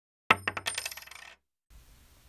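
A quick run of bright metallic clinks with a ringing tail, used as a logo sound effect. The first clink is the loudest, and the rest come faster and fainter until they stop after about a second.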